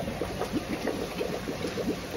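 Water pouring from a hose into a tub of live crabs and shellfish, gurgling and splashing in a run of quick bubbling chirps.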